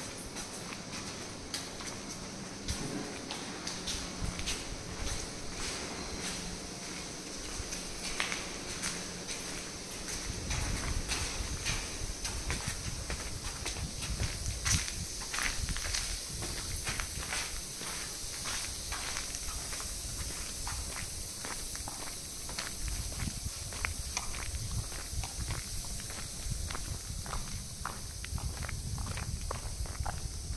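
Footsteps of someone walking on a hard floor at about two steps a second, with a low rumble joining in about a third of the way through.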